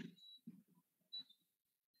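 Near silence: faint room tone with a few brief, faint blips.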